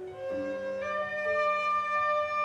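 Plastic soprano recorder playing the note Re (D), one steady held tone that firms up under a second in.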